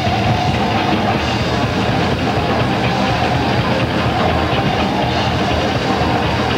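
Thrash metal band playing full-on: distorted electric guitars over a drum kit, loud and continuous, heard through a camcorder's microphone on a VHS recording.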